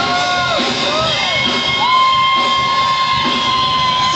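Live duranguense band music, loud and steady-beated, with a woman singing and the crowd shouting and whooping. A long held note starts about two seconds in.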